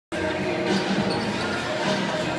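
Basketball game in a large arena, heard from the stands: steady crowd noise and game sounds from the court, with a ball bouncing on the hardwood.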